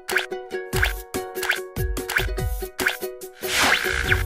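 Upbeat plucked jingle with a short falling plop sound effect about every two-thirds of a second, and a shimmering whoosh near the end.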